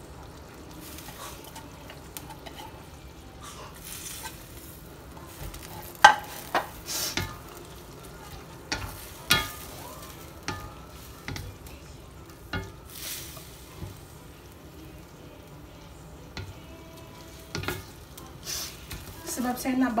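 Wooden spatula stirring and tossing wet fried noodles with vegetables and meatballs in a stainless steel wok, with irregular knocks and scrapes of the spatula against the pan, the loudest about six seconds in, over a steady low sizzle of the sauce.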